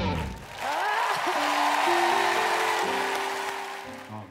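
Studio audience applauding and cheering at the end of a sung performance, rising about half a second in and fading toward the end, with a few held music notes underneath.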